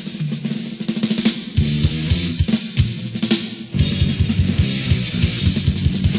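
Recorded thrash metal with no vocals: a drum fill on snare and kit over a thinned-out, stop-start band for the first few seconds. About three and a half seconds in, the full band with distorted guitar comes back in over a fast, even kick-drum beat.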